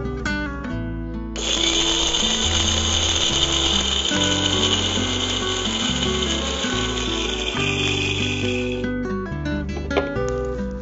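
Electric mixer grinder (Indian mixie) running for about seven and a half seconds, switching on suddenly about a second in and stopping near the end, over background music with a steady bass line.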